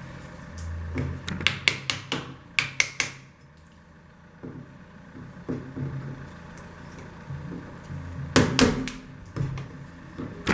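Small hammer striking the back of a hacking knife to chip old putty out of a wooden window rebate: quick runs of sharp knocks, with a short lull in the middle.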